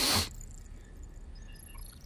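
A person sniffing the air once through the nose, a short sharp inhale at the very start, then only faint background.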